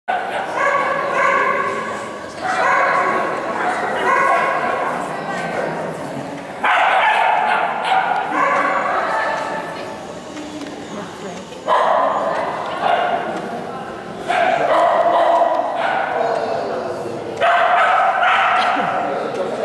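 Dog yipping and barking excitedly in high-pitched, drawn-out calls that come in runs every few seconds, over the background chatter of people.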